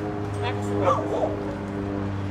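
A dog gives a short whining yip, bending up and down in pitch, about half a second to a second in, over a steady low hum.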